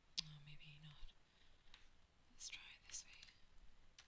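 Near silence in a small room: a faint click just after the start, a brief low hum from a voice, then two soft breathy sounds about two and a half and three seconds in.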